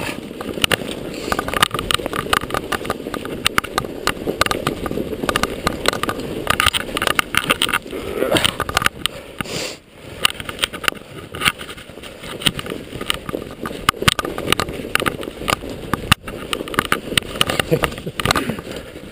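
Mountain bike ridden over a snow-covered root-and-rock singletrack: continuous rumble of tyres through loose fresh snow and the bike rattling, with many quick clicks and knocks as it rides over bumps. A brief lull comes about ten seconds in.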